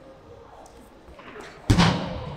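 A heavy rubber weighted throwing ball thrown hard and landing with one loud thud near the end, followed by a brief rustle that dies away over about half a second.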